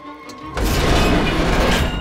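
A hatch in a metal dome being opened: a loud rushing, rumbling noise that starts suddenly about half a second in and holds steady, with background music underneath.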